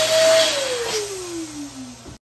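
Electric dual-nozzle balloon inflator running as it fills two latex balloons: a loud motor whine with a hissing rush of air, its pitch sagging steadily through the fill. It cuts off abruptly at the very end.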